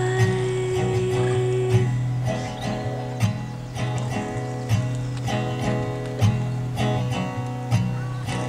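Acoustic guitar with a capo played in a slow, steady pattern, with accented strokes about every second and a half over a sustained low bass. A held sung note carries over from the previous line and ends about two seconds in.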